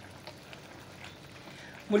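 Chicken adobo simmering in a steel wok: a faint, steady bubbling hiss of the soy and oyster sauce, with a wooden spatula stirring the chicken pieces. A man's voice starts right at the end.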